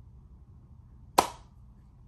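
A single sharp hand clap about a second in, over faint low room hum.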